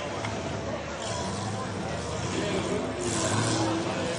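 V8-engined Ford Cortina running as it is driven around a grass course, with the engine note rising somewhat in the second half.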